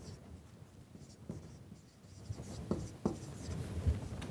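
Marker pen writing on a whiteboard: faint scratches and squeaks of short strokes, starting about halfway through after a quiet first part.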